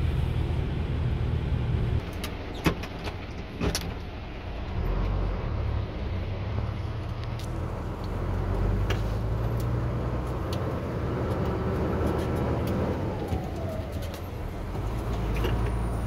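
Isuzu truck engine running at low revs while driving slowly over a bumpy dirt track, heard from inside the cab. A few sharp knocks and rattles come from the cab over the bumps, the loudest between about two and four seconds in.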